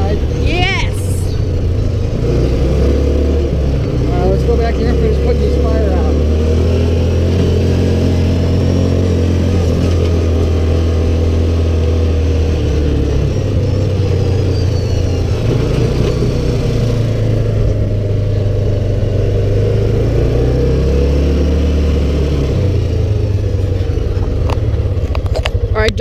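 Side-by-side UTV engine running as it drives over rough grassy ground. The engine note holds steady, then drops and picks up again a couple of times as the machine slows and speeds up.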